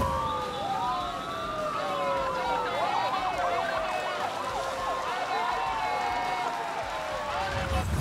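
Several sirens wail at once, their pitches slowly sliding up and down and crossing each other, over shouting and cheering from roadside spectators as the race passes.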